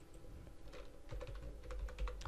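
Computer keyboard being typed on: several faint keystrokes as a short word is entered into a text field.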